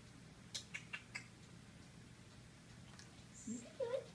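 A pit bull mix gives a brief, high whine that rises in pitch near the end. Before it, in the first second or so, come four light ticks.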